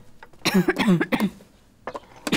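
A woman's short, harsh fit of several coughs about half a second in. This is the cough of a lung illness, which the physician diagnoses as consumption that has already reached the lungs.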